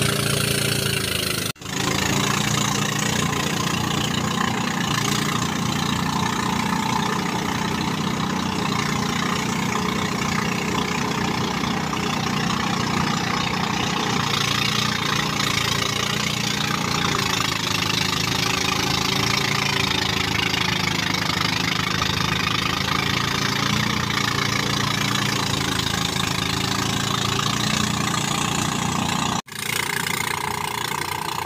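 Engine-powered rice thresher running steadily at constant speed, its small engine driving the threshing drum as straw is fed in. The sound drops out for an instant twice, once early and once near the end.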